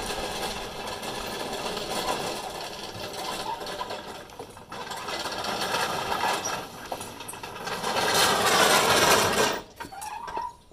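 Electric drive of a remote-control mower, 24-volt wheelchair motors turning all four wheels through roller chains, with its gas engine not running: a steady whine that dips briefly twice, grows louder near the end as the machine comes close, then stops just before the end.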